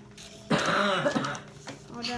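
A person clearing their throat: one rough, raspy sound starting about half a second in and lasting under a second.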